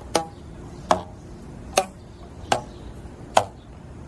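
Rubber bands stretched across a homemade box lyre plucked one at a time: five short twanging notes, one a little less than a second apart, each band sounding a different tone.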